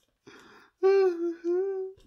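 A man's voice: a short breathy sound, then a high held vocal note lasting about a second and wavering slightly in pitch, made while laughing.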